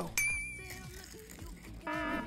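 A short high electronic chime at the start that fades within about half a second. Near the end a buzzy electronic alarm tone starts, the first of a row of even pulses from a fire alarm sound effect.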